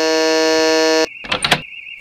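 Electric door-entry buzzer sounding one steady buzz for about a second, then cutting off. A high warbling tone runs underneath, and a brief flurry of short sounds comes about a second and a half in.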